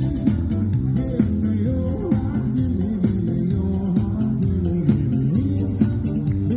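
Live band music playing loud and steady: a guitar carries the melody over bass, with a regular drum and cymbal beat.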